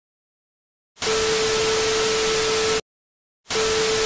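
TV static sound effect: a loud hiss with a steady mid-pitched beep tone over it, starting about a second in, cutting off suddenly near three seconds and starting again half a second later.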